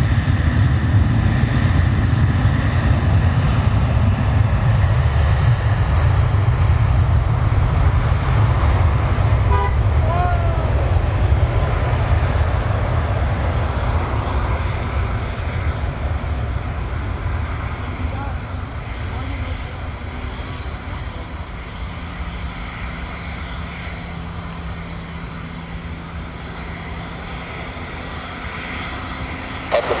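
Boeing 737 twin jet engines running at high power as the airliner rolls along the runway: a loud, deep rumble that slowly fades as the aircraft moves away.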